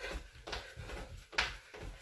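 Feet bouncing on a hard laminate floor while shadow-boxing on the toes: a quick run of soft thumps, about two to three a second, with one short sharp hiss partway through.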